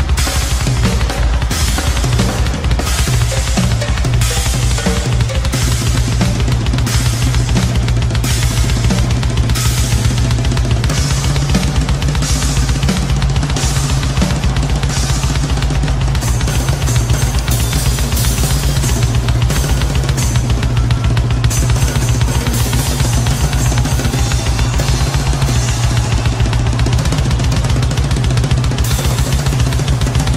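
Live rock drum kit solo: fast, dense playing on bass drums, snare, toms and cymbals, kept up without a break.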